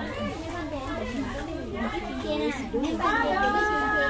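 Several people talking at once in overlapping voices, with one voice drawn out into a long steady held note for the last second or so.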